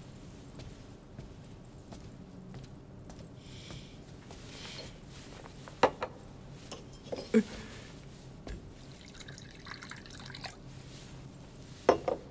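Wine poured from a metal ewer into a cup, with a few sharp clinks and knocks of the ewer and cup on the table about halfway through and again at the end.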